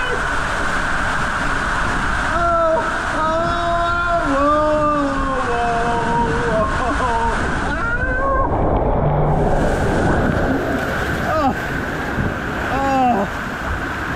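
Water rushing down an enclosed tube water slide under a rider on an inflatable ring, a continuous wash of noise. The rider calls out several times with long, wordless, gliding shouts.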